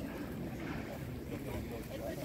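Indistinct chatter of several people talking in the background, with wind rumbling on the microphone.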